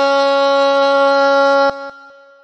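A solo voice singing Pahari seharfi holds one long, steady note at the end of a line, then stops abruptly near the end, leaving a fading echo.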